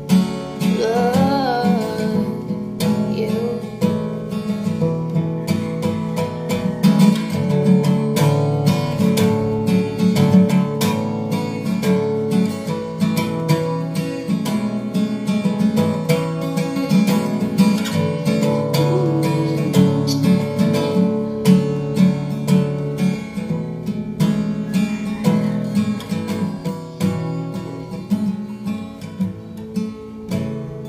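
Acoustic guitar strummed in a steady rhythm, playing the song's chords on as an instrumental outro. A short wordless vocal slide sounds over it about a second in.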